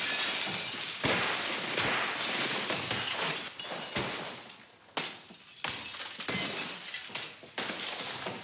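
Glass being smashed again and again, each sharp crash followed by the crackle and tinkle of falling shards; the strikes come about a second apart and grow quieter toward the end.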